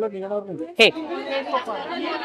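People talking over one another: indistinct chatter with no distinct non-speech sound.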